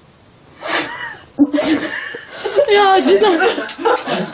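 A girl bursting into laughter: a short hush, a sharp burst of breath under a second in, then loud laughter with a word spoken in it.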